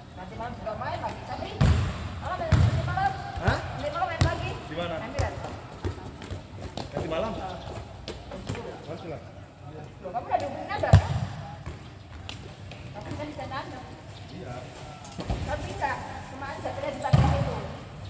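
Several sharp thuds of a futsal ball, the loudest about eleven seconds in, among voices calling out on and around the court.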